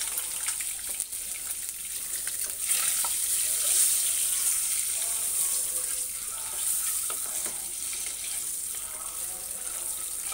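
Hard-boiled eggs frying in hot oil in a non-stick pan: a steady sizzle, with a few light clicks as they are turned.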